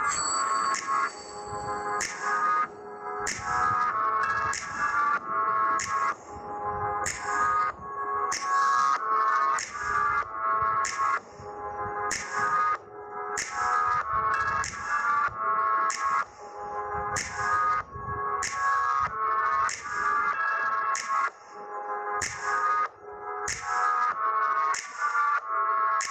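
Instrumental background music: held notes with a steady, regular beat.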